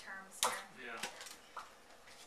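Two sharp clicks about half a second apart as a small shot-glass cup and its plastic sippy lid are handled, between brief bits of talk.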